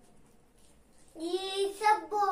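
Near silence, then about a second in a young girl's voice starts, drawn out and sing-song.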